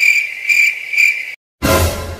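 Cricket chirping, edited in as a sound effect: a steady high trill pulsing about twice a second, three pulses, cut off abruptly after just over a second. A louder, noisier sound starts near the end.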